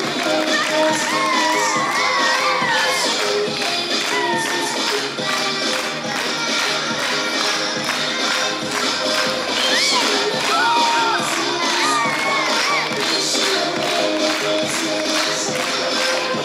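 A crowd of young women clapping and cheering over music, with high whooping shouts a second or so in and again around ten seconds in.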